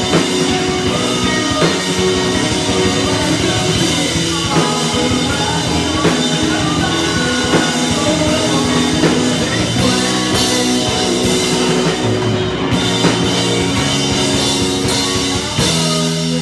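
Live rock band playing a song: electric guitar, bass guitar and drum kit, with a sung lead vocal.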